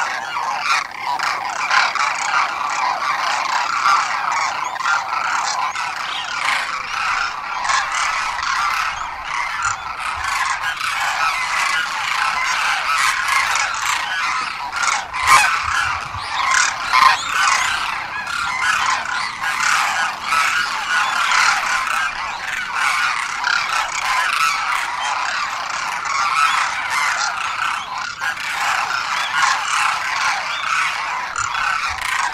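A flock of demoiselle cranes calling, many calls overlapping without a break.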